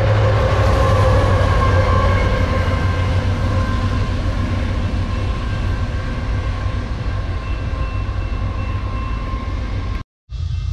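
Rear distributed-power diesel locomotives of a BNSF intermodal freight train, a BNSF unit and a Ferromex unit, passing close by with a heavy, steady engine and wheel rumble. The rumble eases slowly as the train draws away down the track.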